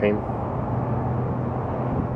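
Steady outdoor background noise with a constant low hum underneath, without change through the pause.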